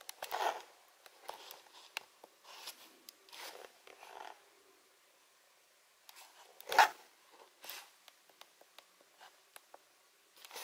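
Handling noise from a small handheld compact camera being moved and fiddled with: scattered short rustles and small clicks, with one louder knock about two-thirds of the way through.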